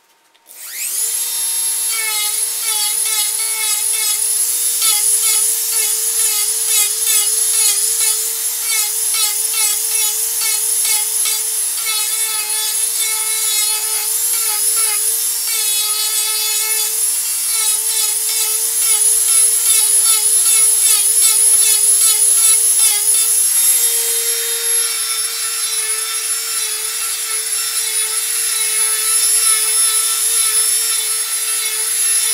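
Handheld rotary tool switched on about half a second in, spinning up to a steady high whine. Its pitch wavers as the carving bit grinds into the pine.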